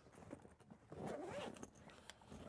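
Faint zipper and rustling of a camera case being opened, loudest about a second in.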